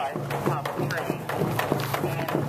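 Hand-held frame drum beaten with a padded beater in a steady fast rhythm, about four beats a second, with voices over it.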